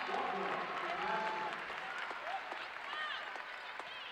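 Gym crowd applauding and cheering a made basket, with scattered voices in the stands, easing off slightly.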